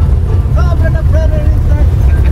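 Steady low rumble of an old vehicle's engine and road noise heard from inside its passenger cabin while it is moving, with a faint voice talking in the middle.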